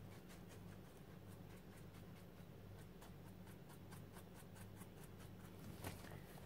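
Near silence: soft, quick scratchy strokes, about three to four a second, of paint being dabbed onto a crinkled tissue-paper journal cover, over a faint steady hum.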